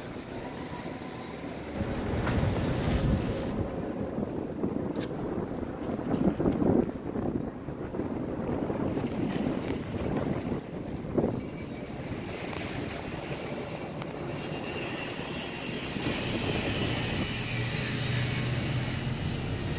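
Outdoor wind rumbling on the microphone over background traffic noise, swelling in gusts. A steadier low engine-like hum comes in near the end.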